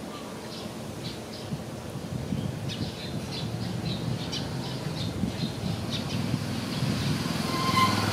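Small birds chirping in short, repeated calls, over a low rumble that grows louder toward the end; a brief higher call comes just before the end.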